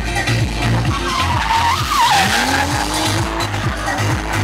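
Electronic dance music with a steady beat, over which a BMW E36 drift car's M3 straight-six revs rising and its tyres squeal about halfway through, as the car swings into a sideways slide.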